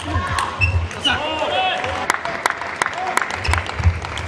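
Table tennis rally: sharp clicks of the ball off the rackets and table, coming in quick succession in the second half.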